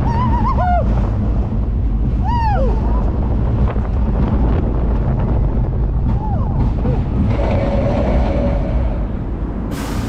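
Arrow looper roller coaster train running along its steel track at the end of the ride, a steady low rumble with wind on the microphone. A rider's voice calls out twice in the first few seconds. A steady whine lasts about two seconds near the end.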